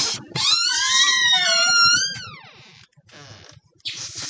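A bird giving one long call of about two seconds, several tones sounding together, rising slightly and then sliding steeply down in pitch at the end.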